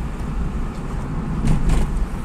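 Car running along an asphalt street, heard from inside the cabin: steady low engine and road rumble, with a brief louder noise about one and a half seconds in.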